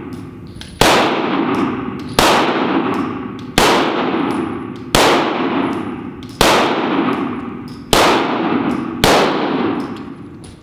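Walther PDP pistol fired one-handed in slow, steady fire: seven loud shots about a second and a half apart. Each shot rings out in the echo of an indoor range.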